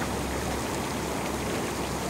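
Steady rush of bubbling, churning water from a hot tub's jets, with a low hum under it that drops away near the end.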